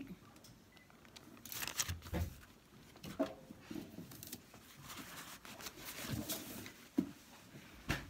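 Faint scattered knocks and rustling of hands working with paint-making things on a kitchen counter, with a few sharper taps about two seconds in and near the end.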